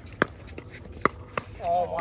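A plastic pickleball struck by paddles in a quick exchange of volleys: three sharp pops, about a quarter second in, at one second, and again a third of a second later. A player's voice follows near the end.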